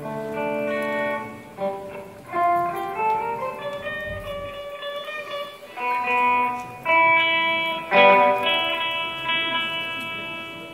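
Live instrumental music led by an electric guitar playing a slow melodic line of held notes, with a run of rising notes about two to four seconds in.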